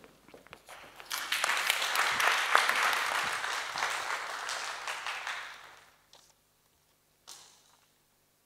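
Audience applauding, starting about a second in, swelling and then dying away after about five seconds. A brief single noise near the end.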